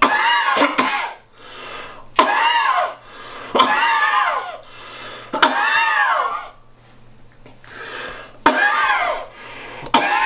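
A man coughing hard in a fit: about five loud, drawn-out hacking coughs, each under a second, spaced a second or two apart.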